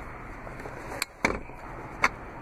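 Two sharp clicks about a second in, close together, from the latch of a folding third-row seat as its pull strap is tugged. They sound over a faint, steady background noise.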